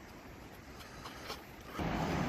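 Quiet outdoor background: a faint steady hiss with a few soft clicks and rustles. Near the end a louder low rumble sets in.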